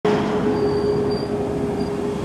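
Steady road-vehicle noise, a rushing sound with a constant hum, from a van driving along a snowy street.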